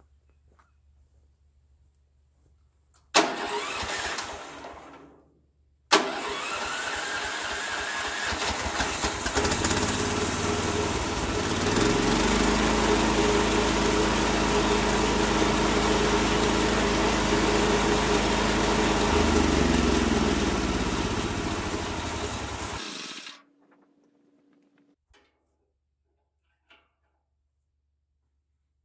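Homemade bandsaw sawmill's gasoline engine started on an electric starter: it catches about three seconds in and dies away within two seconds, then starts again at about six seconds, speeds up and runs steadily, and is shut off abruptly near the end.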